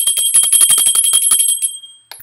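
A small metal handbell shaken rapidly, about ten strikes a second, its high ringing held steady and then dying away just before the end. It is rung to open a reading.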